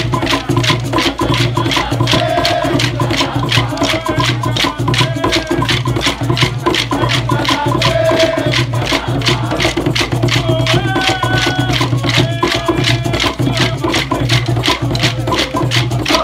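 Maculelê music: atabaque drums holding a steady low beat under rapid, evenly spaced wooden clacks of grima sticks being struck together, with hand shakers.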